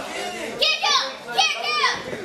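Children in the ringside crowd shouting and yelling in high voices, two spells of shouts, the first about half a second in and the second near the end.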